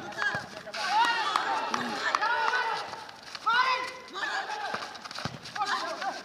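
Several men shouting and calling to each other during a football game on pavement, with running footsteps and a few short thuds underneath.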